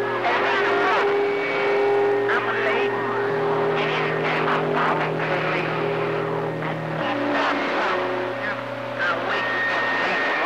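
CB radio receiver picking up skip: garbled, unintelligible voices of distant stations buried in static. Several steady whistling tones and a low drone from overlapping signals come and go, changing every few seconds.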